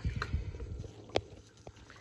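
Handling noise as a phone is moved about: a low rumble at first, then a sharp click a little over a second in and a fainter tap shortly after.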